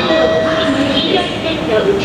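Escalator's recorded safety announcement in a woman's voice in Japanese, beginning the line asking elderly people and small children to hold hands, over a steady low rumble.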